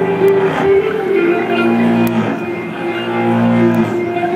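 Live rock band playing a slow intro heard from the audience: long, ringing guitar notes held over a low sustained tone, with no drum beat.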